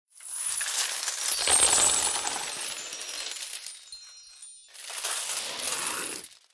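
A cascade of metal coins pouring and clinking together, swelling to its loudest in the first two seconds and tailing off. A second, shorter rush of coins follows about five seconds in.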